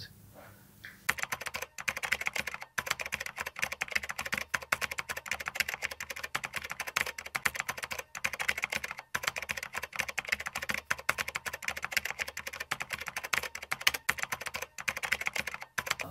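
Keyboard typing sound effect: rapid, continuous key clicks that start about a second in and stop just before the end, accompanying text typed letter by letter onto a title card.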